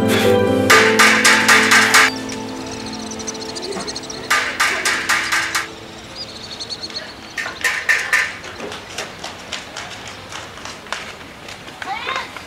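Metal hammer striking hot iron on an anvil in quick clusters of blows, each ringing brightly, over sad string music that ends about two seconds in.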